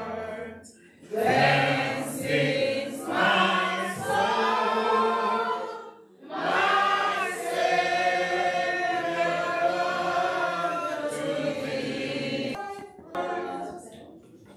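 A congregation singing a hymn together, line by line, with short breaks between phrases about a second in and again about six seconds in.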